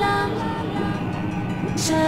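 Electronic dance music: a horn-like synth riff glides up into held notes and repeats about every two seconds, with occasional cymbal hits.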